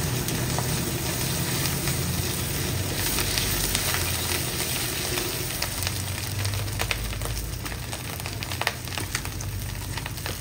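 Fried rice with diced ham, egg and onion sizzling in a wok while a wooden spatula stirs and scrapes it. Sharp clicks of the spatula against the wok come more often in the second half.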